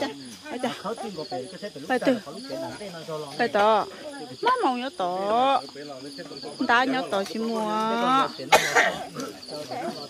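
Several people talking, with a steady high chirring of night insects behind the voices.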